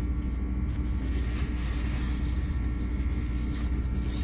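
Steady low machine hum with a constant drone. Faint rustles and light clicks from fabric being folded and pressed by hand.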